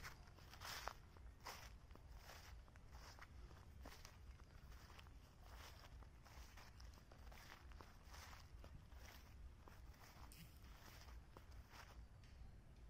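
Faint footsteps of a person walking at a steady pace over grass and leaf litter.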